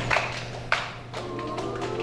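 Hand claps from the singers of an a cappella choir: two sharp claps, the second and louder one about three-quarters of a second in, during a short gap in the singing. The voices come back in with held notes about a second in.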